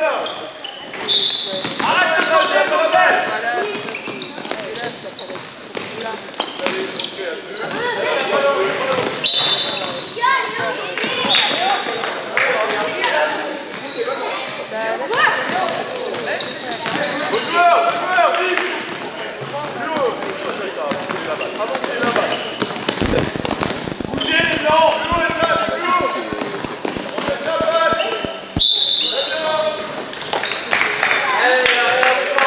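Basketball game sounds: a ball bouncing on the court floor among players' and spectators' voices, with short high squeaks now and then. Near the end a ball is dribbled with quick, even bounces.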